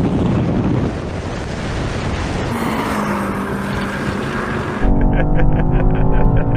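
SUVs, a Porsche Cayenne among them, accelerating hard side by side on a wet runway: engine noise under a steady hiss of tyre spray. About five seconds in it cuts to a louder, steady engine note.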